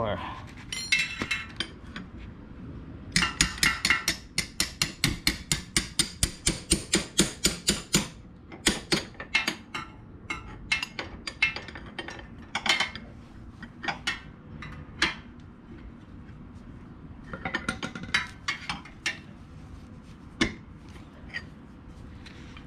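Hammer striking the steel rear axle of a Honda Shadow VLX 600 to drive it out of the wheel hub: a quick run of ringing metal taps, about four a second, for around five seconds, then scattered single strikes and a short burst of taps near the end.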